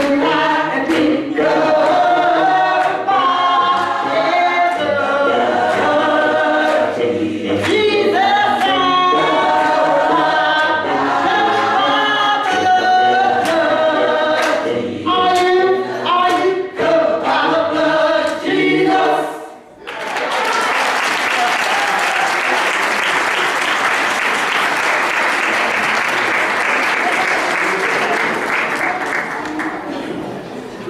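Youth gospel choir singing, many voices in harmony, stopping a little under twenty seconds in. Applause follows for about ten seconds and thins out near the end.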